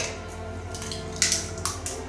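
An egg's shell cracking and being pulled apart over a ceramic mixing bowl: a few short crunchy cracks in quick succession from about a second in, over steady background music.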